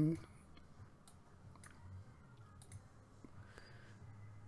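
A few scattered computer mouse clicks at irregular intervals over a faint, low steady hum.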